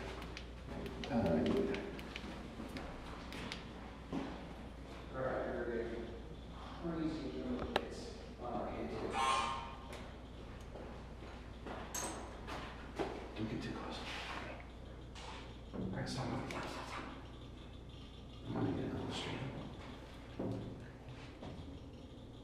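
Low, indistinct voices with scattered small clicks. The faint electronic beeping of a K2 EMF meter runs under them, the meter reacting strongly to an EMF reading.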